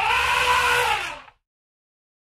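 Cartoon elephant trumpeting sound effect: one call of about a second that rises slightly in pitch, then falls away and stops.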